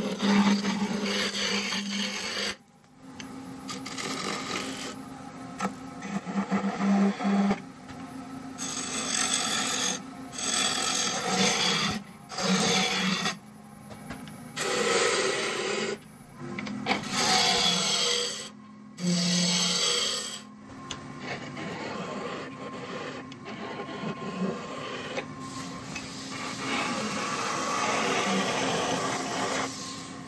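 Wood lathe running while a gouge cuts a spinning wooden spindle. The cutting comes in repeated passes of a second or two, with short breaks in which only the lathe's low hum remains.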